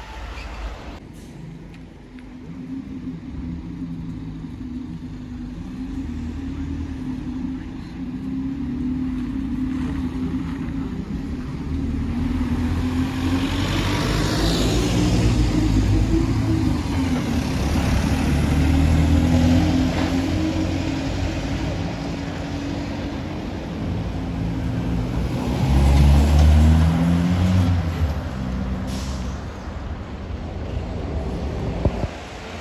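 Single-deck bus engine running as the bus approaches and pulls past, growing louder towards the middle, with a hiss of air around then. A second bus engine rumbles loudly as it moves off near the end.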